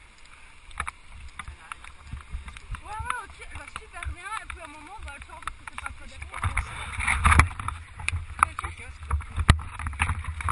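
A few short calls that rise and fall in pitch, then rubbing and knocking on the camera body with wind rumble, growing louder about six seconds in.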